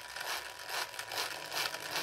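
Small 300 RPM DC gear motor running at low speed under PWM control as its speed is stepped up, giving a steady, noisy whirr.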